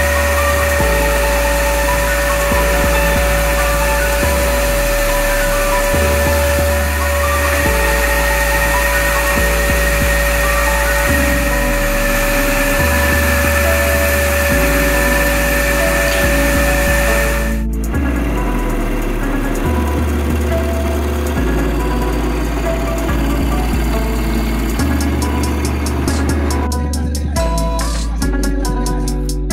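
A band saw running with a steady whine as a cedar board is fed through it, over background music with a bass line; the saw's whine cuts off abruptly about two-thirds of the way in and the music carries on alone.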